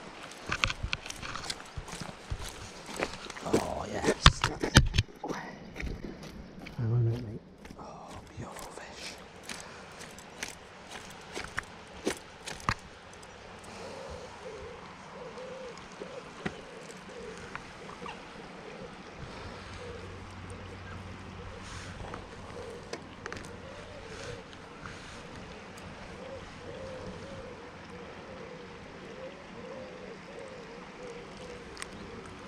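Knocks and clatter of a landing net and fishing tackle being handled during the first five seconds or so, the loudest part, followed by a quieter steady outdoor background with a faint wavering sound repeating in it.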